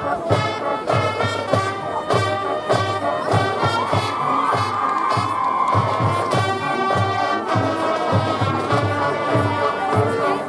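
High school marching band playing, brass over a steady drum beat, with a crowd cheering.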